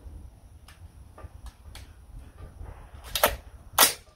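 Ruger SFAR .308 rifle being handled with light clicks, then two loud metal clacks about half a second apart near the end as the charging handle is pulled back and let go. The rifle is being cleared after a failure to load on the reduced gas setting two.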